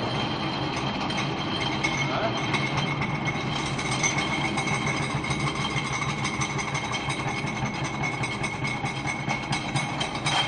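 Belt-driven glass hammer crusher running steadily on its electric motor, with a steady high whine over a dense rattle.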